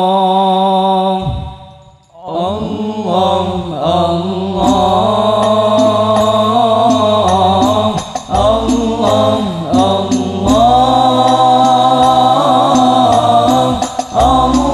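Al-Banjari sholawat group: a long held vocal note on "Allah" ends about a second in, and after a brief gap the singers come in together with an ornamented Arabic devotional chant. Frame drums (terbang) join about four seconds in and keep a low, steady beat under the voices.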